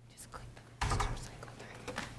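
Clicks and handling noise as a computer is worked at a lectern microphone, with a louder rustle about a second in and low murmured voices.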